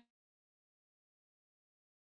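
Digital silence: the audio cuts out entirely, with no sound at all.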